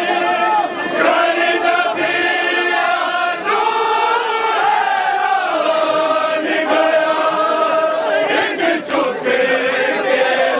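A group of men chanting a nauha (Muharram lament) together in unison, with long drawn-out notes that rise and fall.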